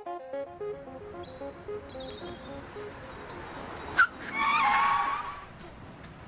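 The last notes of the theme music end about a second in, giving way to outdoor ambience with birdsong. About four seconds in there is a sharp click, followed by a louder rushing sound with a wavering tone that lasts about a second.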